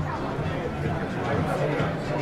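Voices of many passers-by talking at once, the steady chatter of a busy pedestrian street.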